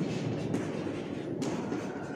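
Chalk writing on a blackboard: scratchy strokes with a couple of sharp taps, one about half a second in and another near the middle.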